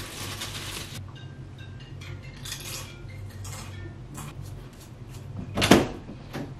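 Plastic chip bag crinkling as a hand reaches into it, then a few shorter rustles. Near the end comes one sharp, much louder knock.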